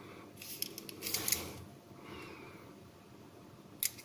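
Small Mikov pocket knife with a stamped sheet-metal handle being handled: two brief metallic scrapes and rustles in the first second and a half, then a single sharp click near the end.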